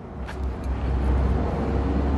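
A motor vehicle engine running: a low steady rumble, with a faint steady hum above it.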